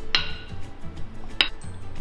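A wooden rolling pin knocks twice against the counter, about a second apart, as it is handled. Background music plays throughout.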